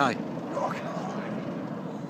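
An aircraft flying overhead, its engines making a steady noise, with a brief bit of a man's voice at the start.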